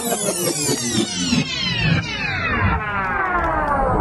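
Falling-pitch sweep effect in a dance music mix: many tones glide down together over about three seconds and fade out near the end, with the beat and bass dropped out.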